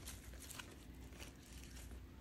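Faint rustling of ti leaves and plastic twine being handled, with a few soft ticks over a low room hum.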